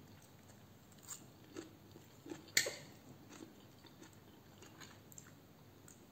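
A person chewing a mouthful of raw arugula salad: faint, irregular crunches and mouth clicks, with one sharper, louder click about two and a half seconds in.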